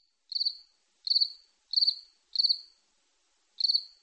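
Cricket chirping as a comic "crickets" sound effect marking an awkward wait: five short, high, pulsed chirps at an even pace, with a longer gap before the last.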